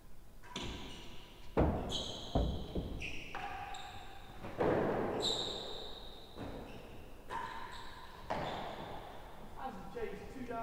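Real tennis rally: racket strikes on the hard cork-cored ball and the ball knocking off the court's walls, penthouse roof and floor, about ten sharp knocks in uneven succession, some followed by a brief ringing note, echoing in the large enclosed court.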